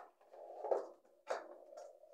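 Handling noise as a small plastic lamp and its cable are moved about on the floor, with one sharp click a little past a second in.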